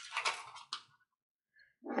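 Paper rustling and crinkling for under a second as the sublimation transfer print is peeled off the glass bottle, with a small click near the end of it, followed by silence.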